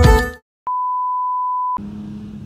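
Background music cuts off about half a second in, and after a brief silence a single steady electronic beep at one high pitch sounds for about a second, then stops abruptly.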